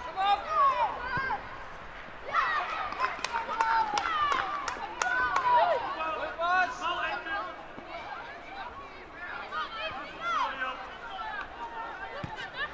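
Young footballers and spectators shouting and calling out across the pitch as a goal is scored, busiest in the first half. A few sharp knocks come in the middle.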